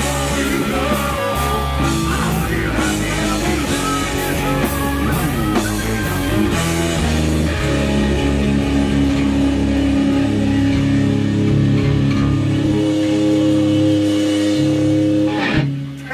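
A live rock band of electric guitar, bass guitar, drum kit and trombone playing together in a small rehearsal room. The drum hits fall away about halfway through, the band holds a final ringing chord, and it cuts off just before the end.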